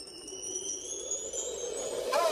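Quiet electronic intro music: a synthesized sweep in which several high tones glide slowly upward together.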